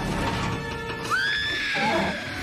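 Orchestral film score playing, joined about halfway through by a woman's high scream that rises sharply and then holds.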